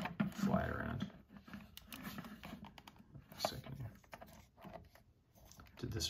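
Small hard-plastic clicks and taps, irregular and scattered, as a Micro Machines TIE Fighter is worked onto the plastic arm of a toy playset; it does not go on easily.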